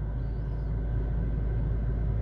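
Steady low rumble heard inside a car's cabin, with no other event standing out.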